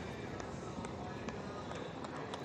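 Faint, even outdoor background noise of a road race broadcast, with a few faint irregular ticks, during a pause in the commentary.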